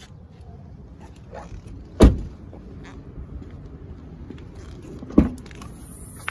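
A car door shutting with a heavy thump about two seconds in. A second, shorter thump follows about five seconds in, with a faint high whine after it.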